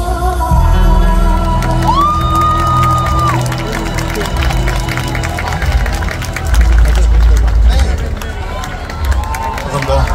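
A live pop song ending on stage: backing music with heavy bass, a long held high vocal note for about a second and a half, and an audience cheering and clapping.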